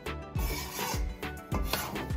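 Steel spatula scraping and rubbing through dry wheat flour in a metal kadhai as the flour is stirred and dry-roasted, over background music with a steady beat.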